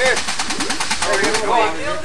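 A Nissan four-cylinder engine idling through an open, hood-mounted exhaust, giving a rapid, even train of exhaust pulses. Voices talk over it in the second half.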